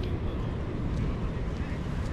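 Steady outdoor background noise, heaviest in the low end, with no distinct event.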